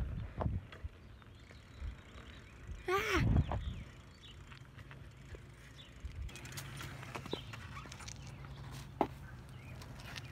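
A person's short, loud cry of "Ah!" about three seconds in, over faint riding noise from a bicycle with scattered light clicks.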